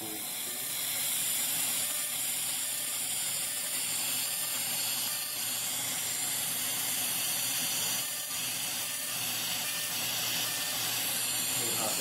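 Lumenis UltraPulse fractionated CO2 laser working across facial skin during a resurfacing pass: a steady hiss, strongest in the high range, that builds up over the first second and runs on.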